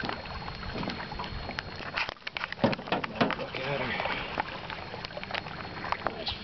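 Scattered knocks and clicks, mostly in the middle of the stretch, with faint murmured voices behind them.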